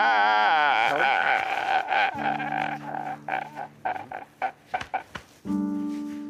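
A man wailing and sobbing: a long wavering cry that breaks after about a second into short, gasping sobs, over background music with sustained held notes.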